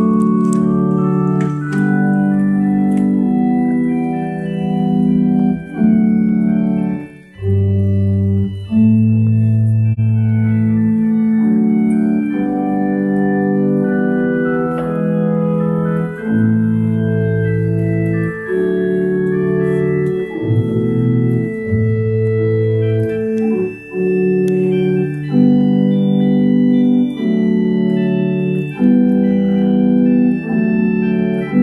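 A 1986 GEM Plenum electronic church organ playing a slow run of sustained chords, with low bass notes coming in now and then and a brief break about seven seconds in. It is working again after its battery-damaged CPU and backplane connectors were repaired.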